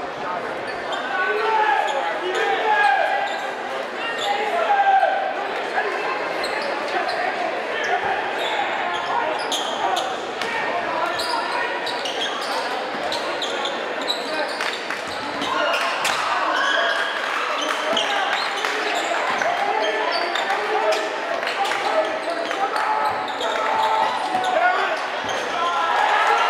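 A basketball bouncing on a hardwood gym floor, with short sharp knocks scattered throughout, over the steady chatter of a crowd of spectators in a gymnasium.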